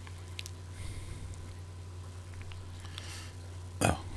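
Steady low hum with a few faint short clicks; a man says "Oh" at the very end.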